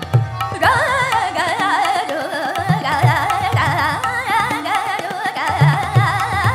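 Female Hindustani classical vocal in Raag Madhuvanti, entering about half a second in with fast, wavering ornamented phrases. Tabla strokes and harmonium accompaniment run underneath.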